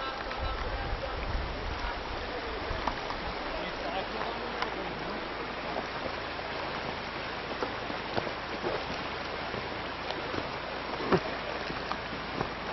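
Shallow, rocky stream running steadily over stones, with a few sharp knocks, the loudest near the end.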